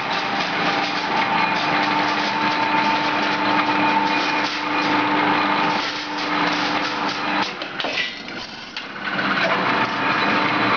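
Strip straightening and feeding machine of a steel cut-to-length line running, a steady motor whine over rattling metal. The whine drops away about seven and a half seconds in and picks up again near the end.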